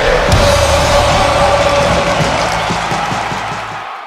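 Intro sting music for a channel logo, loud at first and fading out near the end.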